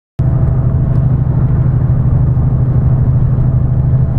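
Steady low drone of engine and tyre-on-road noise inside a lorry's cab cruising at motorway speed. It cuts in abruptly with a click just after the start.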